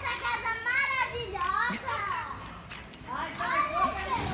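High-pitched children's voices calling out and chattering, with no clear words, quieting briefly a little past the middle.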